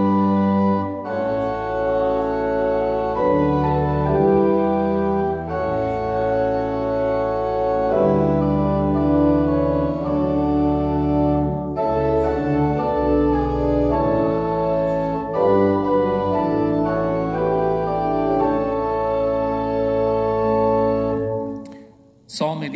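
Church organ playing slow, sustained chords, moving to a new chord every second or two, then dying away just before the end.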